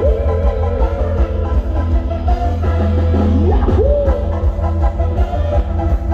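Live band playing loud Thai ramwong dance music with heavy bass, a drum kit and electric guitars; the lead melody wavers, then bends up and down in pitch about three to four seconds in.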